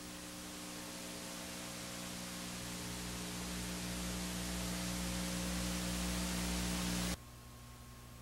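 Steady hiss with an electrical hum on the recording, slowly growing louder, then dropping off abruptly about seven seconds in.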